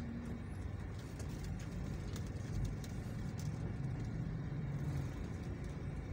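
Steady low rumble of a car's engine and tyres driving slowly along a street, heard from inside the car.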